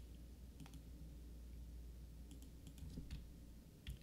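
A few faint, scattered computer clicks from keys or mouse as the display is switched, over a low steady hum.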